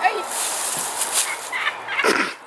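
A girl acting out a death: breathy, rasping, throaty vocal noises as she slumps over.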